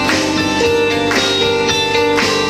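Live band playing: electric guitar, bass, drum kit and keyboard, with held notes over a steady drum beat of about two hits a second.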